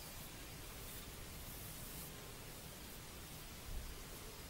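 Faint room tone and steady microphone hiss, with a soft low bump just before the end.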